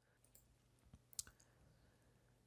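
Near silence: faint room tone with one short click a little over a second in.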